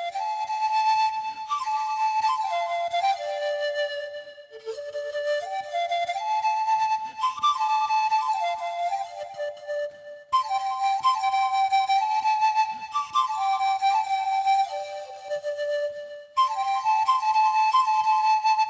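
A flute playing a slow melody in phrases of a few seconds, stepping between held notes, with short breaks about four, ten and sixteen seconds in.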